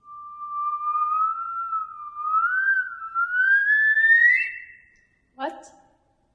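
A performer's voice holding one high, thin, wavering note that slides slowly upward for about five seconds, then stops. A short, lower vocal sound comes about half a second later.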